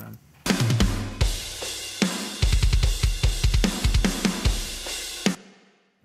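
Playback of a mixed metal drum kit recording at a fast punk beat: cymbal wash, snare and kick, with a rapid run of kick hits in the middle. The kick's highs are boosted hard by EQ. The playback starts about half a second in and cuts off suddenly shortly before the end.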